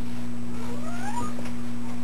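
A single short call that rises in pitch, heard about a second in, over a steady low electrical hum.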